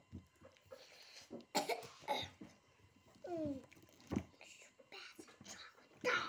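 A child coughing twice, about a second and a half in, followed by a short falling vocal sound from a child and a single light knock.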